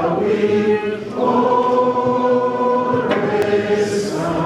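A large group of people singing together, holding long steady notes, with a short break about a second in before the next phrase.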